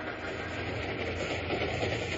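Radio-drama sound effect of a steam train running: a steady noise with no voices over it.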